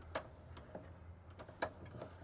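Dual-pane camper window being pushed open on its prop arm: three sharp clicks and a few fainter ticks from the window's hinge and stay as it is worked toward one of its open settings, over a steady low hum.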